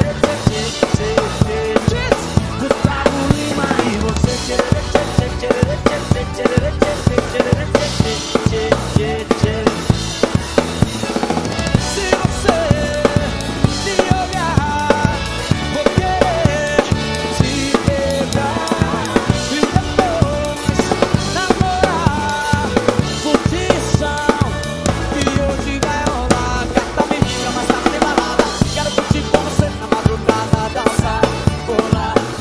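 Acoustic drum kit played to a steady, driving beat, with kick drum, snare and cymbals, along with the recorded track of the song, whose melody runs above the drums.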